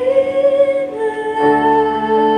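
A girl singing a held, wordless note into a microphone over an instrumental backing. Her note slides up slightly through the first second, and the accompaniment moves to a new chord about one and a half seconds in.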